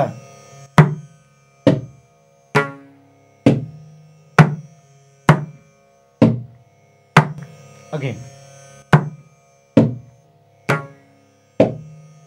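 Mridangam played slowly by hand, the eight-stroke beginner syllable set 'ta ta cha ta ki ta ta ka' in even single strokes about one a second. Each stroke rings briefly and dies away before the next.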